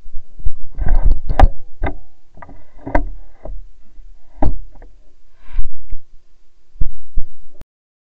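Close, loud handling noise: a string of irregular thumps and knocks with rustling as the camera is jostled and swung through undergrowth. It cuts off abruptly near the end.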